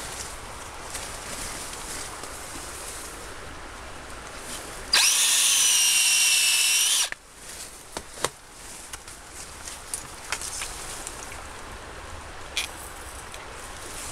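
Power drill boring an injection hole into the main stem of a Rhododendron ponticum bush near its base, ahead of herbicide stem treatment. The motor whines steadily for about two seconds, starting and stopping abruptly, and a few short sharp clicks follow.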